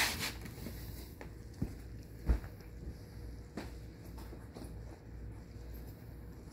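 Handling noise: a short rustle as the gauze dressing is held, then a few soft clicks and one dull thump a little over two seconds in.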